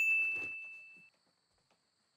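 A single bright bell-like ding, the sin-counter sound effect, that rings and fades away over about a second.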